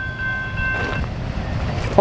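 CSX autorack freight train rolling away with a steady low rumble from its wheels on the rails. A steady high-pitched ringing tone runs over it and stops about a second in.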